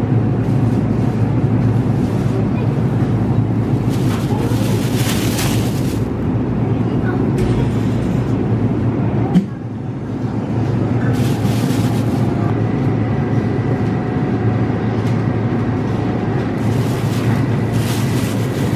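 Clear plastic produce bag rustling in several short bursts as plums are picked and dropped into it, over a steady low background rumble, with a single knock about halfway through.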